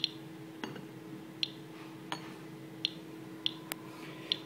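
Medcom Inspector EXP Geiger counter clicking at irregular intervals, about seven short clicks in four seconds, with its pancake probe held over a cut-glass dish. Each click is a detected count of radiation, here from the mildly radioactive glass.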